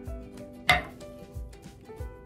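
A metal canning lid set down on paper on a table with one sharp click about two-thirds of a second in, over background music with a steady beat.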